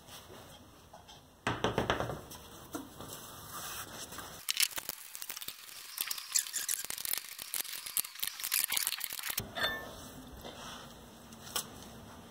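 Metallic clicking and rattling of a lug wrench and socket as the wheel's lug nuts are run on. The clicks come in quick irregular runs after about a second and a half of quiet.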